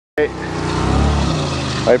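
A vehicle engine running steadily.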